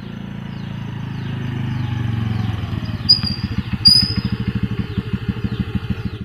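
Motor scooter engine coming closer and getting louder, then easing off to an even pulsing idle as it pulls up and stops. Two short, sharp, high squeaks sound about three and about four seconds in.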